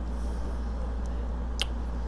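A single sharp click about one and a half seconds in, over a low steady hum.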